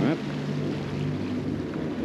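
Leopard 45 sailing catamaran under way at sea: a steady low hum runs under a constant rush of water and wind. A single spoken word falls at the very start.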